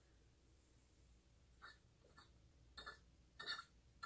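Faint gulping of someone drinking from a glass bottle: about four short swallows in the second half, otherwise near silence.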